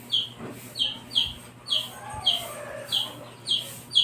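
A bird chirping over and over, about two short falling chirps a second, with faint keyboard typing beneath.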